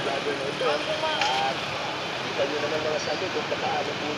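Busy city street sound: steady traffic noise with people talking in the background.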